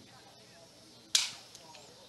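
A wooden baseball bat cracking and breaking as it meets a pitch: one sharp crack about a second in that dies away quickly.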